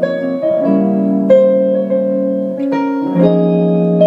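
Stage keyboard in a piano voice playing sustained chords that change every second or so, with a hollow-body electric guitar playing alongside.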